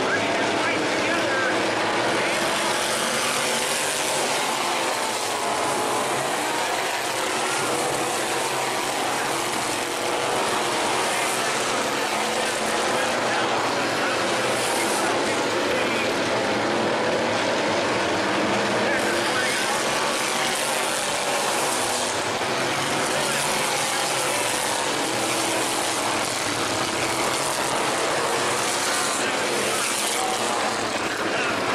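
Engines of a field of thunder stock race cars running on a dirt oval track, a steady, continuous loud sound that does not let up.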